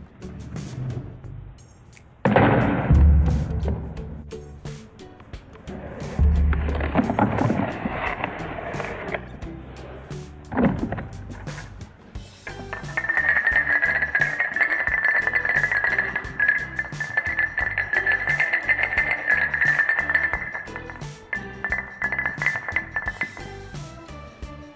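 Background music over a chain reaction: a few heavy knocks and rolls in the first half as the canister and tennis ball drop and run down cardboard chutes, then a dense run of small clicks for about ten seconds as a long line of dominoes topples.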